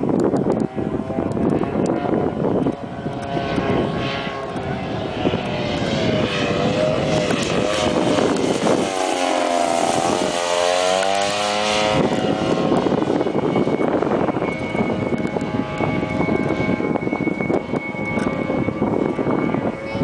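Gas-engined RC Spitfire warbird, a 3W 85 petrol engine swinging a three-blade propeller, flying overhead with a continuous engine drone. About ten seconds in it makes a close low pass and the engine note drops in pitch as it goes by.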